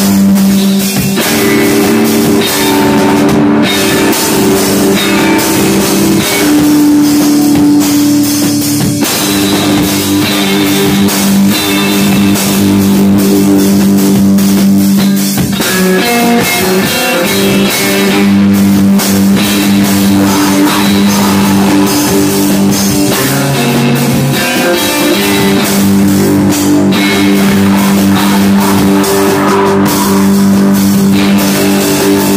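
Live rock band: guitar holding long, sustained chords that change every few seconds over a drum kit with a constant wash of cymbals.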